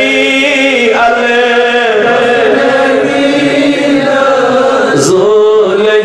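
A man's voice chanting melodically into a microphone, in long held notes that glide slowly from one pitch to another.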